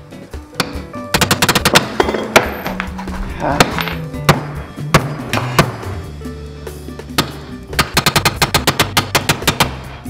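Two bursts of rapid impact-wrench hammering and single hammer blows on a wood block over the pinion of a BMW E36 differential, trying to drive out a stuck pinion that will not move without a bearing press. Background music plays underneath.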